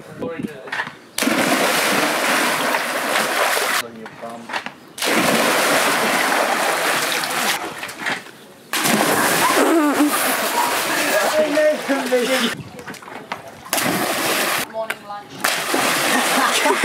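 Bodies plunging off a trampoline into an above-ground pool: four loud rushes of splashing water, each breaking off abruptly, with voices between them.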